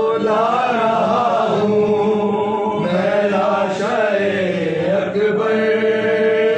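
Male voices chanting an Urdu Muharram lament (soz/nauha) without instruments. A lead reciter sings long, gliding melodic lines over a steady held note.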